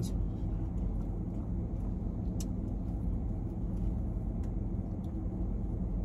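Steady low hum of an idling car heard from inside the cabin, with a couple of faint clicks.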